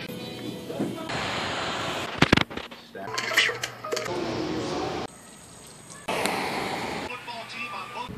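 A rapid string of unrelated snippets of everyday sound, each about a second long and cut off abruptly, with voices and music among them. A sharp knock a little over two seconds in is the loudest moment.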